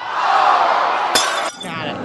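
A rushing hiss of noise, then a single sharp slap a little over a second in: a hand swatting a mosquito.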